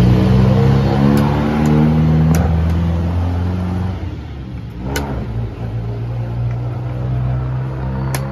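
A motor vehicle engine running close by, its pitch creeping up over the first two seconds, then dropping back and holding steady. Sharp clicks of chess pieces being set down and the chess clock being hit cut through it, the loudest about five seconds in.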